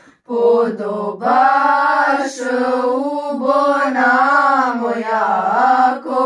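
Group of young women singing a Christmas carol (colind) together, unaccompanied. The singing breaks off briefly for a breath right at the start, then runs on in long held notes.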